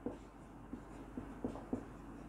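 Marker pen writing on a whiteboard: a few faint, short strokes and taps as letters are written.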